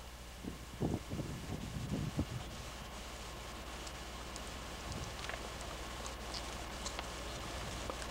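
Faint steady outdoor background noise with a low steady hum, and a few soft low sounds in the first two seconds.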